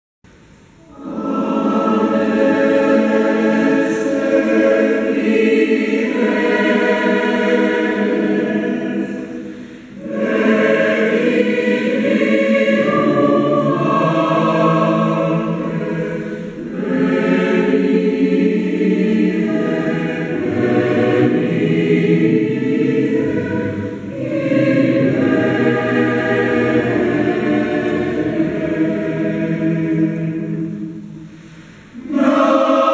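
Mixed choir of men's and women's voices singing a Spanish Christmas carol (villancico), in four long phrases with short breaks between them.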